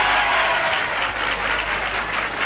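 Audience applauding steadily after an acceptance speech, heard through the narrow, muffled sound of an old radio broadcast recording.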